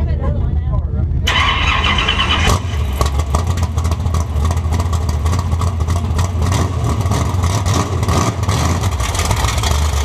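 Dirt track race car's engine running loud right by the camera, with a burst of higher-pitched noise from about one to two and a half seconds in before the engine settles into a steady rumble.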